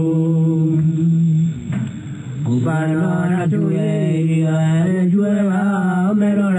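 Chanting in long, low held notes from a documentary clip's soundtrack, with a short break about two seconds in.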